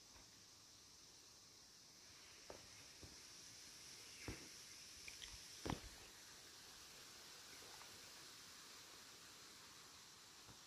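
Near silence: a faint steady high hiss with a few soft knocks between about two and six seconds in.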